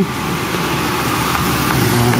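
Steady road traffic noise, with a vehicle engine running close by.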